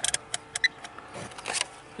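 Rotary selector dial of a UNI-T digital multimeter clicking through its detents as it is turned to the ohms setting: a few short, sharp clicks, most of them in the first second.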